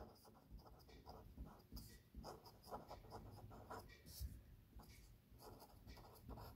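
A pen writing on paper: faint, short strokes one after another.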